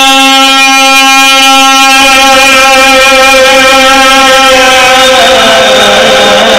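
A man's amplified voice holding one long sung note while chanting a qasida, then gliding down to a lower note near the end.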